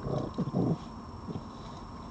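Red fox giving a few short, low growls in the first second, with one more brief growl a moment later.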